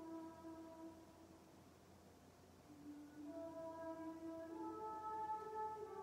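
Soft, slow meditation music of long-held notes stepping gently in pitch. It thins almost away about two seconds in, then the next phrase begins.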